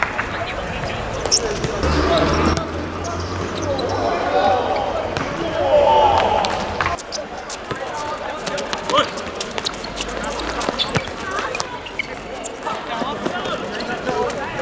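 Football being kicked and bouncing on a hard outdoor court, sharp thuds scattered through, while players shout to each other.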